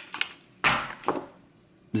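A few light clicks, then two short knocks or scrapes, as cigar tubes are handled and set into the humidor's insert.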